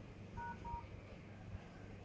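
Phone keypad tones from a Samsung Galaxy Note 20 Ultra: two short, faint dual-tone beeps about a quarter second apart, a little under half a second in, as keys are tapped on the dialer.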